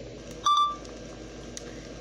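A single short electronic beep about half a second in, over the steady whir of an inflatable lawn decoration's blower fan.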